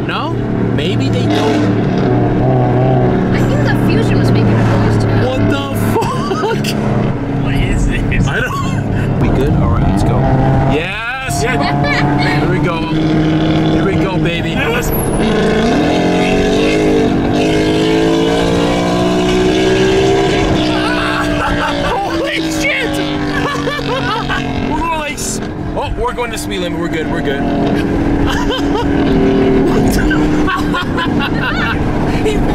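Car engine accelerating, heard from inside a moving car's cabin. It runs fairly steadily at first, then after a brief dip its pitch climbs for several seconds and falls back.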